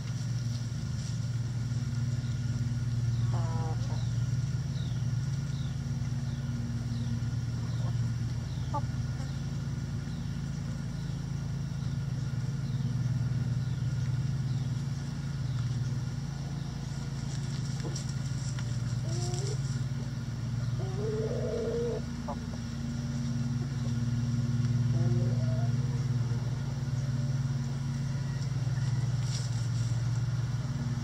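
A steady low mechanical hum, like a motor or engine running, runs throughout. Over it, chickens give a few soft, short clucks now and then.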